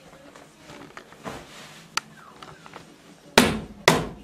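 Two loud bangs, like heavy knocking, about half a second apart near the end, after a single sharp click in the middle.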